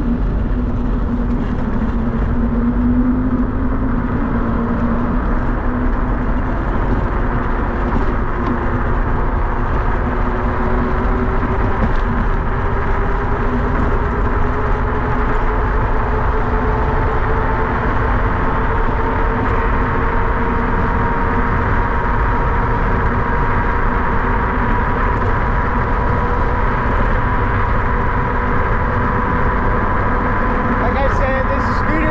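A 48 V, 2500 W electric kick scooter being ridden at speed: steady rushing noise of wind and tyres on asphalt, with a faint motor whine that climbs slowly in pitch as the scooter gathers speed.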